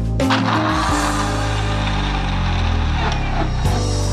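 Background music, with a Panasonic MX-AC400 mixer grinder running under it for about three seconds, its motor spinning the jar's blade through ice and carrots.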